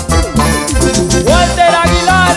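A live band playing upbeat dance music, with drums and bass keeping a steady beat under electric guitar and a gliding melody line.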